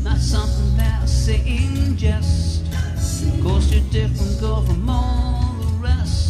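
A man singing while strumming an acoustic guitar, the voice carrying a melody over steady strums.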